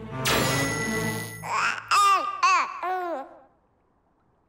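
A cartoon sound effect, a noisy whoosh with steady tones, lasting about a second, followed by a baby's babbling, a string of short rising-and-falling notes, as the giant robot baby comes to life. It dies away to near silence just before the end.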